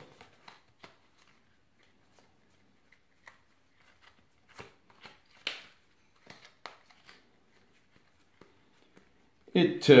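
A deck of Rider-Waite tarot cards being handled and turned around card by card: quiet, irregular flicks and slides of card stock, with a few sharper snaps in the middle seconds.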